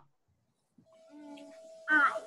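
Video-call audio that drops out to dead silence for under a second, then comes back as a faint steady tone and hum, ending with a child's voice saying "um, I".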